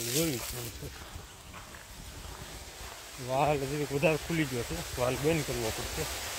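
A man talking in two stretches: a few words at the start, then a longer run of speech after a pause of about three seconds.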